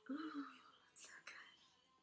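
A woman's soft, falling 'ooh', followed about a second later by two short, breathy, unvoiced sounds; otherwise quiet.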